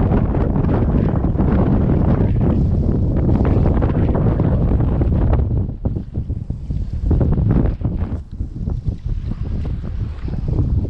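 Strong wind buffeting the microphone: a loud, low rumble, steady at first, then coming and going in gusts from about halfway through.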